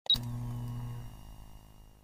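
A short high electronic blip, then a low hum that fades away over about two seconds.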